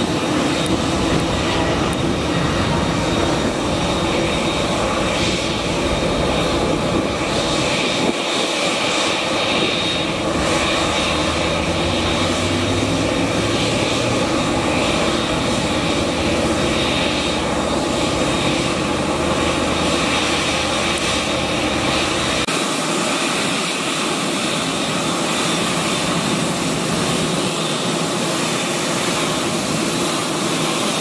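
Twin turbofan jet engines of a Boeing 787 Dreamliner running at taxi power as the airliner rolls toward the camera, a steady loud rush with a thin high whine on top.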